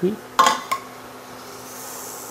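Metal serving utensils clink twice against a stainless-steel pot, the second clink ringing briefly, as braised pork is lifted out.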